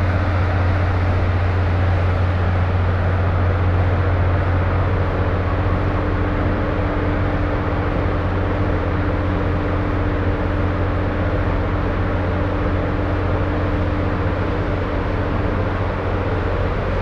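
A steady low mechanical drone with a constant hum, unchanging throughout.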